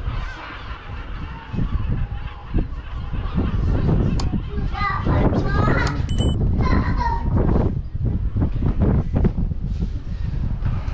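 Seagulls calling as they fly around a high tower, over a steady rumble of wind on the microphone. A short bell-like chime rings about six seconds in.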